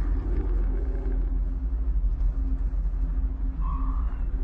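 Low, steady rumbling drone of a suspense soundtrack with a faint held tone above it, and a brief higher tone near the end.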